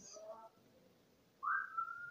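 A pet bird whistling: a single clear note that slides upward and then holds steady, starting about one and a half seconds in.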